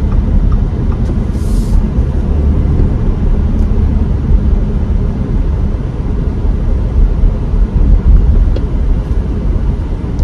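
Steady low rumble of road and drivetrain noise inside the cabin of a 2023 Audi Q5 compact SUV at city speed, easing off as the car slows from about 34 to 27 mph. A brief hiss comes about a second and a half in.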